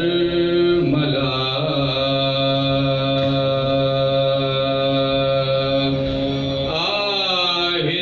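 A man's voice chanting soz, the unaccompanied Urdu lament sung in Awadhi style: one long note held steady for most of the time, then rising in pitch near the end.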